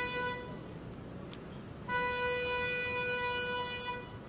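Car horn honking: a short toot at the start, then a long, steady blast of about two seconds beginning just before the two-second mark.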